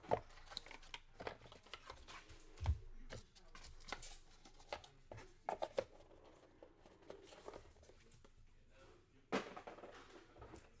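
Small cardboard trading-card box being handled and opened by hand: irregular rustling, crinkling, taps and light knocks of the cardboard. There is a dull thump about a third of the way in and a sharper knock near the end.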